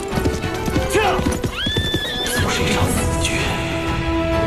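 A horse galloping, its hooves clattering in quick succession, with a horse's whinny rising and then holding about a second and a half in. Dramatic music plays underneath.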